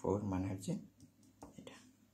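A voice speaking briefly in the first half-second or so, then quiet room tone with a few faint clicks.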